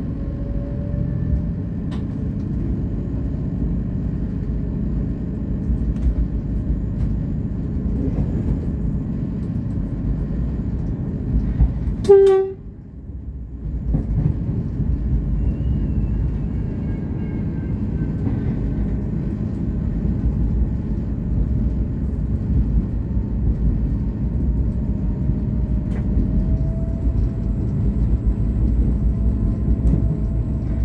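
V/Line VLocity diesel railcar running, heard from the driver's cab as a steady low rumble, with one short horn blast about twelve seconds in.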